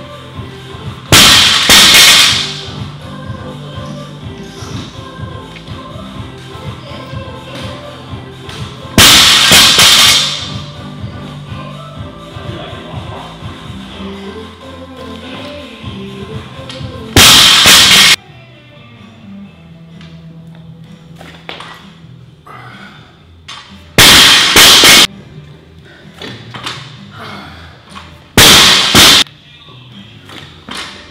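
Background music, broken five times by loud crashes about a second long: a loaded barbell with bumper plates dropped from overhead onto a wooden lifting platform.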